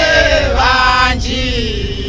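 A group of voices singing a slow, chant-like church hymn. In the second half a long held note slides slowly downward while the other voices fall away.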